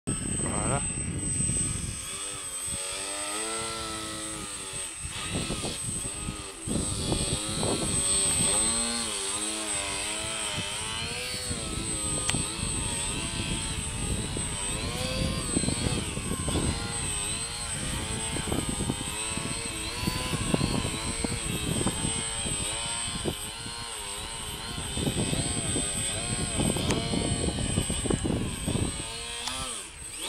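Radio-controlled aerobatic model airplane's motor and propeller running continuously, the pitch swinging up and down again and again as the throttle is worked through low hovering and nose-up 3D manoeuvres.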